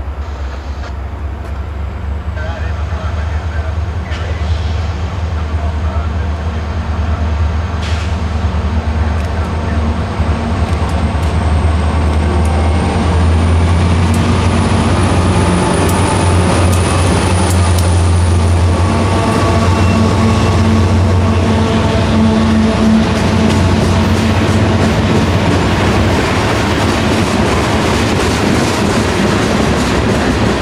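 CSX freight train's diesel locomotives approaching and passing close. The low engine drone grows steadily louder over the first dozen seconds and then holds. Near the end, covered hopper cars roll by with wheel and rail noise.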